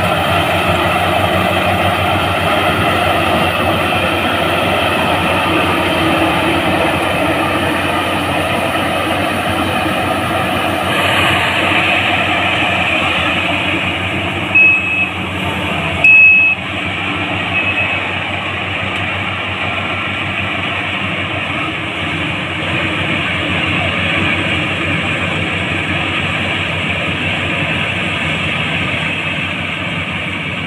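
Crown CCH 106 rice combine harvester running steadily under load as it cuts and threshes a paddy. About halfway through, three short high-pitched beeps sound over it, the loudest things in the stretch.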